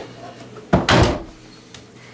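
A door shutting with one heavy thump about three-quarters of a second in.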